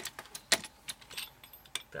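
Sharp metallic clinks of a steel handle against a 5-ton hydraulic bottle jack as the handle is set on the jack's release valve to tighten it before lifting. The loudest click comes about half a second in, with a few fainter taps after it.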